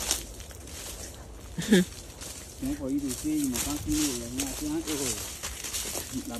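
A man talking indistinctly for a few seconds in the middle, with a short vocal sound just before, over faint rustling and crackling of brush as people walk through dense vegetation.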